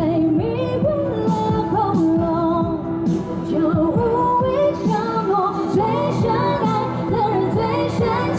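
A woman singing a Mandarin pop song into a microphone, amplified, over an electronic backing track with a beat. The arrangement blends electronic dance music with dubstep.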